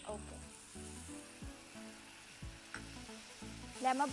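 Chopped onion and capsicum sizzling in a non-stick frying pan as tomato pulp is poured in and stirred with a spatula.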